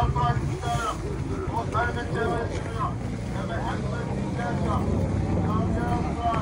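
Market crowd: people's voices talking at a distance, over a steady low rumble.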